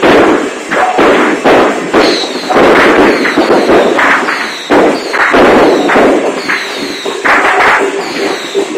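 A string of firecrackers going off in a dense, continuous crackle of rapid bangs.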